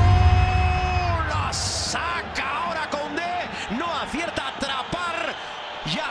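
A music track ending on a held chord with heavy bass, fading out within about the first second, then stadium match sound: a crowd with short excited voices calling out.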